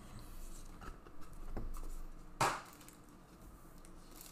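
Trading cards being handled on a table: faint rustles and small clicks, then a single sharp tap about two and a half seconds in as a card is set down.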